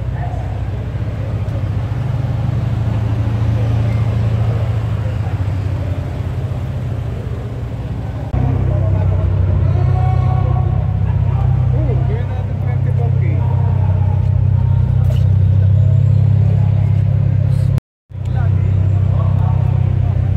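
Parked car engines idling with a steady low hum, louder from about eight seconds in, under the chatter of people nearby. The sound cuts out for a moment near the end.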